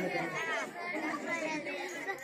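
People talking: untranscribed conversational chatter, with voices overlapping.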